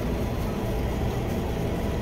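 Steady low hum of running machinery, even throughout, with no distinct clicks or knocks.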